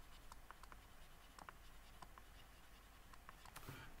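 Faint, scattered ticks and light scratching of a stylus drawing on a graphics tablet, barely above room tone.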